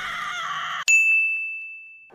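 A wavering pitched sound stops abruptly, and a single bright bell-like ding sounds about a second in, then rings out and fades. It is an edited-in sound effect.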